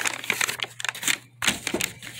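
A folded paper instruction sheet crackling and rustling as it is unfolded and handled: a quick run of sharp, irregular crinkles, with a brief lull near the middle.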